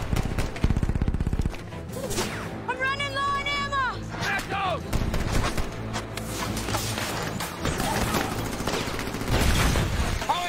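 Film battle soundtrack: rapid rifle fire for the first second and a half. About three seconds in, a high sound rises and falls once, and a shorter one follows a second later. A low steady drone carries on underneath, with scattered shots.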